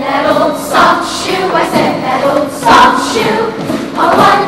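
A youth show choir of boys and girls singing together in a choreographed number.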